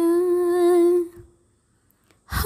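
A woman's voice holding one long sung note, close to the microphone, that fades out a little over a second in.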